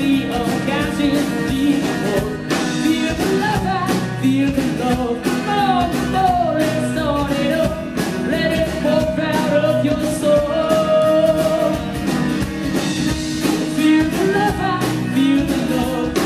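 A live folk-rock band playing: a bowed viola carries a melody over strummed acoustic guitar, electric bass and a drum kit.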